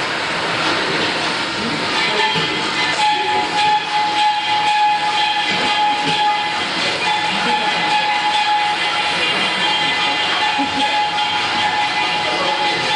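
Gas welding torch flame hissing steadily as it heats steel with a filler rod being fed in. A steady whistling tone joins about three seconds in.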